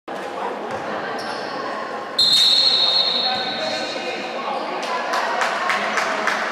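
A basketball being bounced on a wooden gym floor, knocking about three times a second in the second half, echoing in a large sports hall over voices. A shrill, high-pitched tone starts suddenly about two seconds in and lasts over a second.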